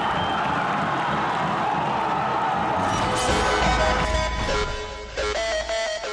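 Stadium crowd noise for about three seconds, then closing music with a deep bass comes in and carries the rest.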